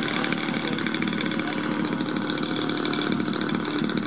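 Radio-controlled aerobatic model airplane's engine buzzing steadily as the plane flies its manoeuvres.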